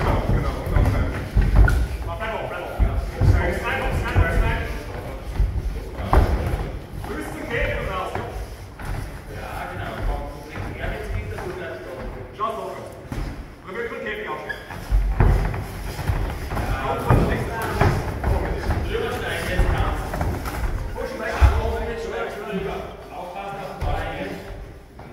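MMA fighters grappling and striking on a padded cage mat: repeated dull thuds and slams of bodies and blows, with people's voices shouting throughout.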